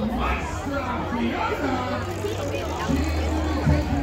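Crowd chatter: many people talking at once close by, with faint music in the background.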